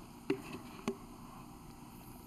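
Two short knocks as a plaster slip-casting mold and a plastic pitcher are handled, about a quarter second and about a second in, over faint room noise.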